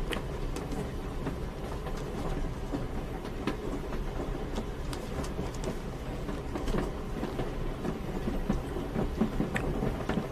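Moving train heard from inside a passenger compartment: a steady low rumble of the running carriage, with occasional faint clicks of wheels over the rails.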